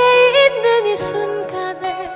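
A woman singing a slow ballad over soft instrumental accompaniment. She holds a wavering note at the start, then the melody steps downward.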